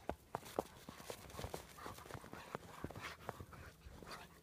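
A dog digging in deep snow with its front paws: rapid, irregular crunches and scrapes of packed snow, several a second.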